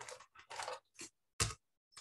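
A hand rubbing over the wax surface of an encaustic painting panel to blend the paint, in several short scraping strokes, with a short knock about one and a half seconds in.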